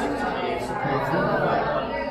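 Many people talking at once in small groups: a steady hubbub of overlapping conversation with no single voice standing out.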